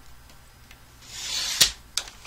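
Sliding-blade paper trimmer cutting through a sheet of patterned paper. The blade is drawn along the rail in a short hissing sweep starting about a second in, which ends in a sharp click. A second, lighter click follows just before the end.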